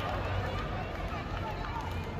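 Faint, scattered voices of players and sideline spectators calling out across an open sports field, over a steady low rumble.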